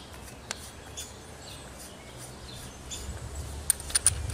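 Faint clicks and ticks of a Lematec handheld sandblaster gun's nozzle cap being unscrewed by hand to change the tip, over a low steady rumble. There is a sharp click about half a second in, another at about a second, and a cluster of small high ticks near the end.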